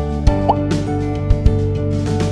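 Background music with held chords and drum hits, with a short rising pop sound effect about half a second in.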